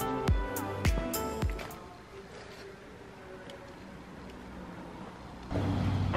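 Background music with a steady beat fades out after about two seconds, leaving a quiet room. Near the end the 2021 VW Golf 8 GTI's turbocharged 2.0-litre inline four-cylinder comes in suddenly and runs steadily, heard from behind at its exhausts: the engine starting up.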